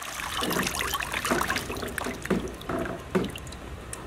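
Water splashing and trickling in a plastic children's water play table, with irregular small splashes throughout.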